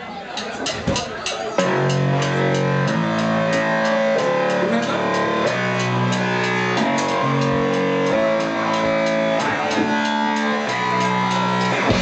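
Live punk band starting a song. A few quick clicks come first, then about a second and a half in the full band comes in loud, with drums and sustained guitar and keyboard chords changing about once a second.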